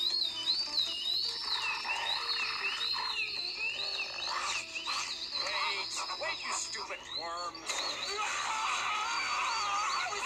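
Cartoon soundtrack: many high, warbling whistle-like tones overlap and slide up and down, mixed with music and a commotion of voices.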